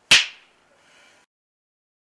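A single loud finger snap, a sharp crack that dies away within half a second.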